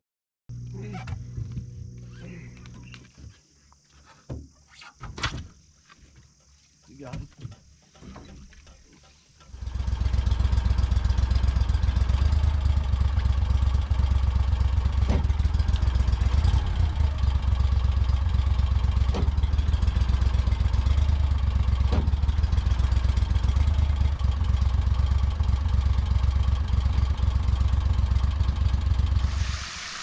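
ProDrive surface-drive mud motor running at full power in reverse: a loud, steady engine drone with a heavy low rumble that starts abruptly about ten seconds in and holds until just before the end. Before it come scattered brief sounds and voices.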